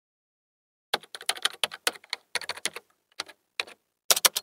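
Computer keyboard typing sound effect: silence for about a second, then a quick, uneven run of key clicks.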